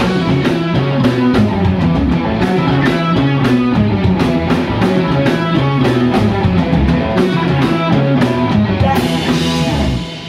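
Live rock band playing loud, with electric guitars and a drum kit keeping a steady beat; the music stops abruptly at the very end, finishing the song.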